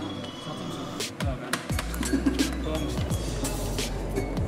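Kitchen clatter: scattered clicks and knocks, with a steady low hum setting in a couple of seconds in.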